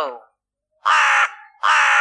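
A crow cawing twice, two harsh calls of about half a second each, the first about a second in.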